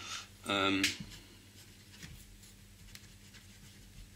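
Pen writing on paper: faint, irregular scratching strokes as a word is written. A short voiced sound from the writer about half a second in is the loudest thing.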